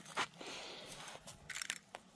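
Faint crunching of dry pine needles and leaf litter underfoot, with a few short sharp crackles, the clearest just past the middle and near the end.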